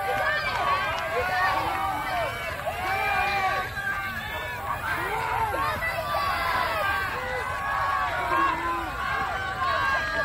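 Crowd of spectators shouting and cheering, many voices overlapping and calling out encouragement to runners going by.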